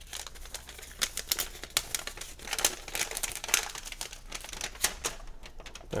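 A sheet of paper being unfolded and handled, crinkling and rustling in an irregular run of crackles, busiest in the middle.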